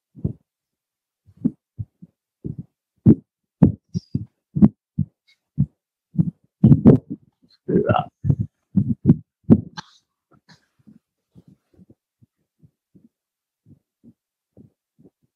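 A man sobbing: a run of short, low catches of breath, about two a second, with a louder voiced sob about eight seconds in, then fainter ones near the end.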